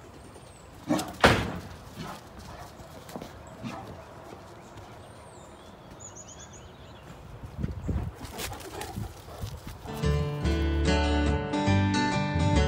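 A big dog, a Great Dane, barks twice in quick succession about a second in, loud and deep, over quiet outdoor background. Near the end, strummed acoustic guitar music starts.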